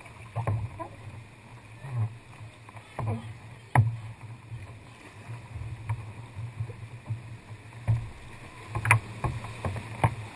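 Kayak paddle strokes: blades dipping into and pulling through the sea water with splashes and dripping, over a steady low wash of water against the hull. Several sharp knocks stand out, the loudest about four seconds in and near the end.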